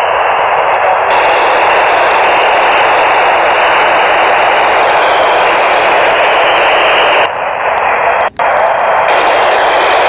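FM radio receiver's speaker hissing with loud, steady static from the IO-86 satellite downlink, with no voice getting through: a noisy, weak signal. It breaks off very briefly about eight seconds in.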